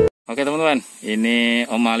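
A man talking, just after background music cuts off.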